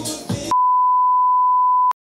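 A single steady electronic beep tone, about a second and a half long, edited in as a bleep sound effect; it starts half a second in and cuts off with a click into dead silence. Party music and chatter are heard briefly before it.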